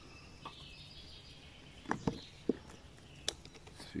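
A few sharp plastic clicks, about two, two and a half and three seconds in, as the quick-release top of a GoPro-style action-camera mount is unclipped from its base. Under them is a quiet outdoor background with faint birdsong.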